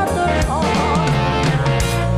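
A live band playing a Bengali folk song: drum kit, bass and electric guitar under a melody line that bends in pitch.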